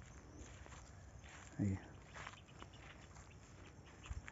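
Faint footsteps and rustling through dry grass and scrub, with scattered light crunches.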